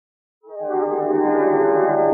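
Harmonium sounding a sustained chord that starts about half a second in and holds steady. The sound is dull, with the highs missing, as from an ageing tape transfer.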